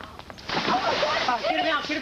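Water splashing as someone jumps into a swimming pool, with a person's voice crying out over it in the second half.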